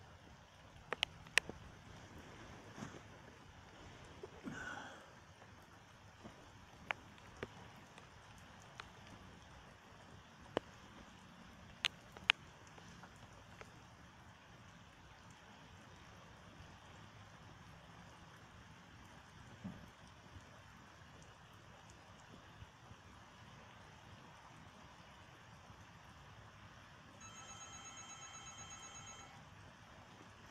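Steady hiss of heavy rain pouring down, with a few sharp taps of drops scattered through the first half. Near the end a mobile phone rings for about two seconds with a pulsing electronic tone: an incoming call.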